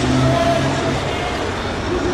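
Road traffic noise: a steady low engine drone from vehicles on the street, with people's voices mixed in.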